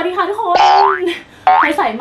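A cartoon-style 'boing' sound effect with rising pitch glides, mixed with a woman's excited voice.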